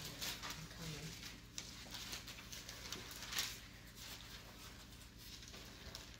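Faint rustling of paper Bible pages being leafed through, with a few soft knocks, one a little louder about three and a half seconds in, over a low steady hum.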